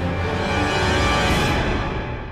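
Tense background music: sustained layered tones with no beat, swelling slightly about halfway through.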